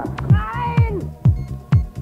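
Electronic dance music from a cassette DJ mix: a steady four-on-the-floor kick drum about twice a second with hi-hat ticks between. In the first second a short pitched sound wavers and slides down in pitch, then only the beat carries on.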